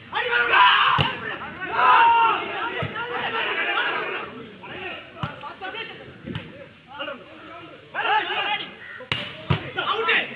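Spectators shouting and talking during a volleyball rally, with the ball struck by hand several times: sharp smacks about a second in, a few more through the middle, and two in quick succession near the end.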